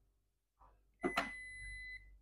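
Toshiba induction pressure rice cooker's control panel: a button press about a second in, answered by one steady high-pitched beep lasting about a second.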